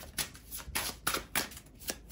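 A deck of tarot cards being shuffled by hand, with short card-on-card strokes repeating about three times a second.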